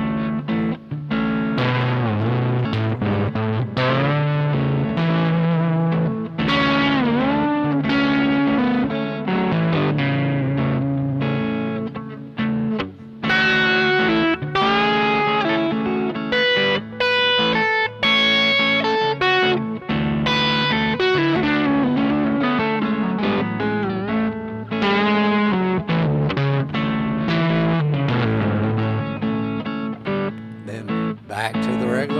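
FGN electric guitar playing an improvised lead line, with several pitch bends, over a looped A major chord backing part. The lead uses the seventh-mode (G-sharp Locrian) pattern a half step below the A major scale, so it shares the A major notes while starting from a different position.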